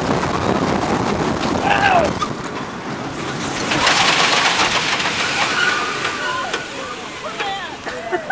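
S&S 4th Dimension roller coaster train running along its track with a steady rush of wind and track noise as it comes into the station. A louder rush of hiss comes about four seconds in, and a rider gives a short groan about two seconds in.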